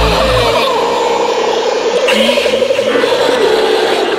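Freeform hardcore electronic dance music. The deep bass and kick drop out about half a second in, leaving a breakdown of sliding, wavering synth tones over a noisy wash.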